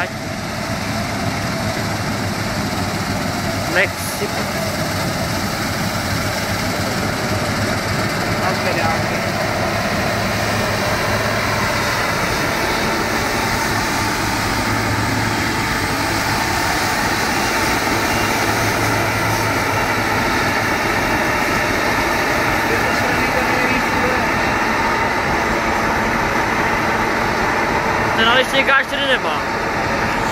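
Claas Lexion 560 combine harvester's engine running steadily, a constant loud machine noise with a low hum that barely changes in pitch or level.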